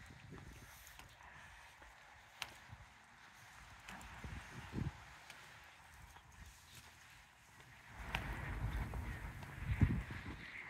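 Faint footsteps of a person walking on pavement, soft irregular thumps, with a louder low rumble in the last two seconds.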